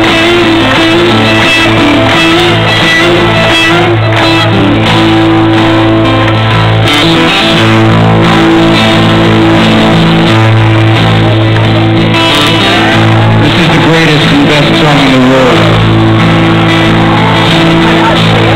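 Acoustic guitar strumming chords in a loud live rock performance, heard through a large PA system from within the crowd.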